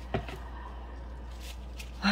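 A single light knock shortly after the start, a plastic cup or container set down on the work surface, then a few faint ticks near the end over a low steady hum.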